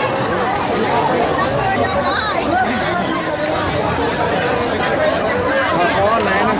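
A dense crowd of many people talking and calling out at once, their voices overlapping into a steady babble.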